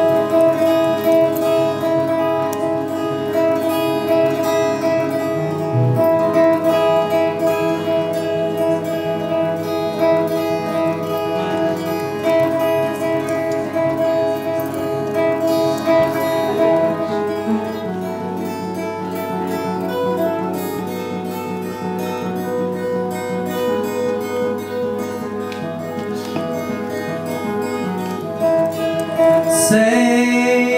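Solo acoustic guitar playing a song's instrumental introduction, strummed chords with held notes ringing on, a little softer in the second half.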